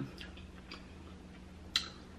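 A few faint, short clicks from eating at the table, the sharpest near the end, over a low steady hum.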